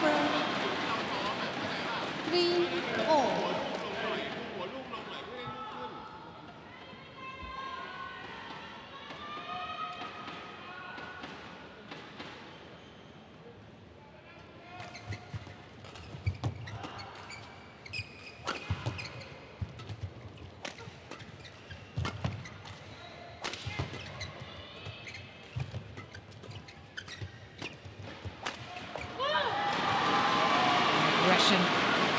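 Badminton rally on an indoor court: a string of sharp racket strikes on the shuttlecock and short shoe squeaks on the court, over about the second half. Before it, voices and crowd sounds between points, and the sound swells again as the rally ends.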